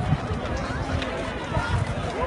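Indistinct voices of people talking nearby, with uneven low rumbling noise on the microphone.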